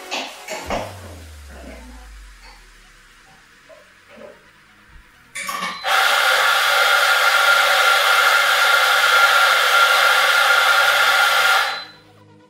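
Electric coffee grinder running for about six seconds, grinding beans straight into a portafilter held under its spout: a loud, steady motor whine that cuts off sharply near the end. A few knocks come in the first second, before it.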